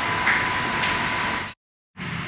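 Steady hiss of laboratory room tone with a faint, steady high whine, cutting off abruptly to dead silence about one and a half seconds in.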